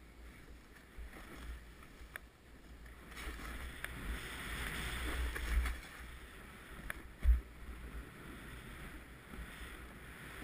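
Powder snow hissing as a rider slides down through it. The hiss swells to its loudest about five seconds in, over a low wind rumble on the microphone, and a single sharp thump comes about seven seconds in.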